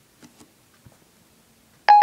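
iPhone 4S Siri tone: one short, bright ding near the end, after a couple of faint ticks.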